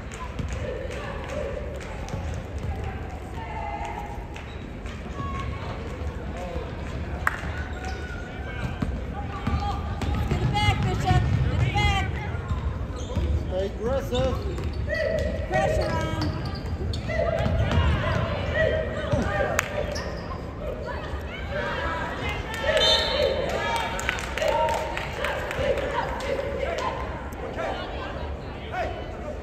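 A basketball bouncing on a gym court during live play, with voices calling out on and around the court.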